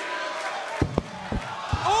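Four sharp thuds of a wrestling-ring brawl, bodies and strikes landing on the ring, the loudest about a second in, over steady arena crowd noise. A commentator's 'Oh!' comes right at the end.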